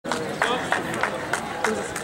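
Hands clapping together in unison in a steady rhythm, about three claps a second, over voices in the background. This is the rhythmic clap that spurs on a discus thrower as he readies his throw.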